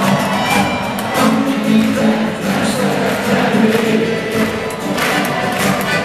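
Live acoustic band music with acoustic guitars playing steadily, with audience noise in the background.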